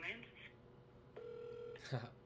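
A single steady telephone beep lasting about half a second as the call is put through to another line, followed by a short, sharp burst of sound just before the end.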